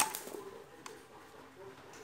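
A sharp metallic clack as the gear selector of a small reduction gearbox is shifted by hand, followed by a fainter click a little under a second later.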